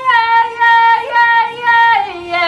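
A young woman singing solo, loud, holding long steady notes in short phrases broken about every half second, the pitch stepping down near the end.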